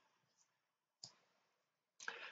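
Near silence with one short, sharp click about a second in, from a picture book's paper page being turned over and laid flat.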